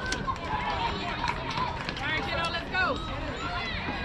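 Several indistinct voices calling and shouting in short bursts from around a youth baseball field, with no clear words.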